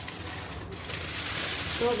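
A steady hiss, a little louder in the second half, with a short bit of voice at the very end.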